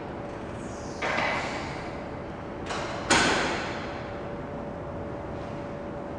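A door opens about a second in and bangs shut about three seconds in, the bang ringing on in a reverberant indoor pool hall, over a steady hum.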